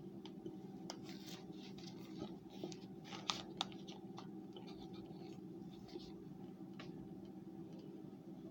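Metal spoon scraping and scooping frozen cornstarch out of a cardboard box: scattered scratchy rustling with two sharp clicks a little past the middle, over a steady low hum.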